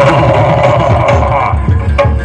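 Live Jaranan Buto accompaniment: kendang hand drums beating a fast, steady rhythm with other percussion. A loud held sound sits over the drums for the first second and a half, then drops out.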